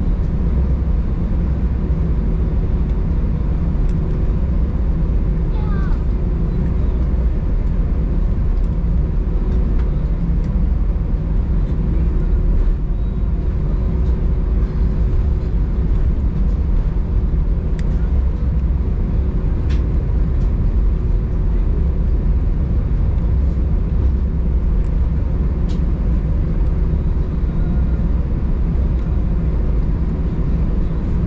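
Cabin noise of an Airbus A319 taxiing: a steady low rumble from the engines and airframe at low taxi thrust, with a faint steady hum.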